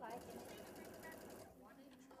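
Sewing machine stitching rickrack trim onto fabric: a faint, fast, even run of needle strokes that dies away about a second and a half in.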